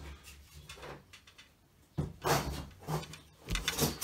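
A few short knocks and scraping sounds of objects being handled and moved on a workbench, starting about halfway in after a quiet first half, one of them with a low thump.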